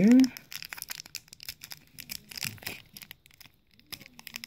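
Foil Pokémon booster pack wrapper crinkling in the fingers in quick, crisp crackles as it is worked at to tear it open; the crackling thins out after about three seconds.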